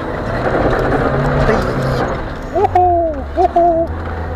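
Lada 4x4 Urban's engine pulling hard in first low gear up a steep dirt climb, under a loud rushing noise, then easing off about halfway through as the car tops the rise. Near the end a man gives a drawn-out, falling "ooh" of excitement.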